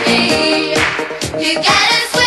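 Upbeat 1980s pop music with singing over a band. Near the end it breaks off and jumps abruptly to a different song.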